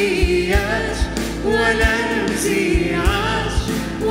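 Live worship band playing an Arabic worship song: singers' voices over drum kit, guitars and keyboard, with a steady kick-drum beat.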